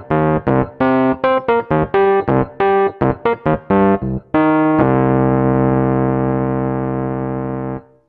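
Synthesizer notes triggered from the Nektar Impact LX88 controller's pads. A quick run of short pitched notes, about four a second, is followed about four and a half seconds in by one held chord that cuts off sharply near the end.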